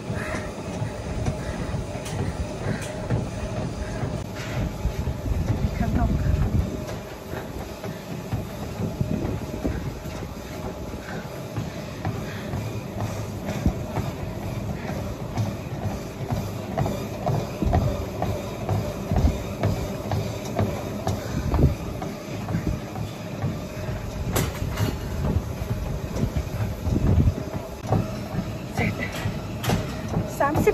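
Treadmill in use: a steady motor hum under the rhythmic thud of footfalls on the moving belt.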